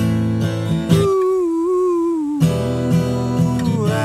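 Acoustic guitar strummed in a steady rhythm, a singer's voice with it. About a second in the strumming stops while one wordless sung note is held and sags in pitch at its end. The strumming comes back before halfway, and the voice glides down again near the end.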